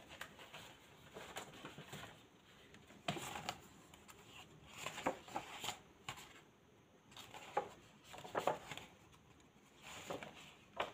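A glossy magazine being handled on a tabletop: its pages are turned over in short, irregular rustles, a few seconds apart.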